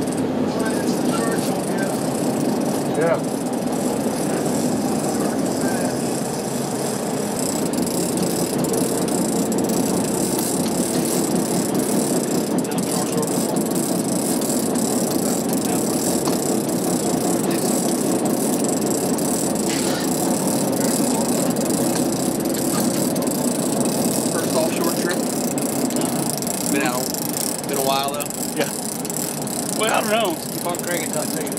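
Steady rumble of a sportfishing boat's engines under way, with wind and water noise on deck. Faint indistinct voices come in near the end.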